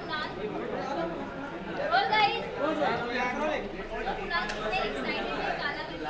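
Several people's voices talking over one another: indistinct chatter among a small crowd.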